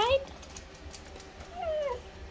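Husky-type dog giving one short whine that falls in pitch near the end, answering the question of whether it wants to go outside.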